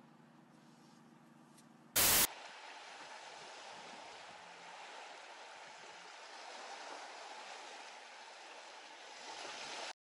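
Faint low hum, cut off about two seconds in by a short, loud crackle, then a steady rushing hiss as the small inflatable boat moves over the water.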